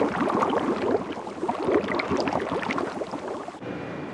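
Liquid bubbling and gurgling in a fluid-filled tank as a steady stream of bubbles rises, used as an animation sound effect. The bubbling cuts off suddenly near the end.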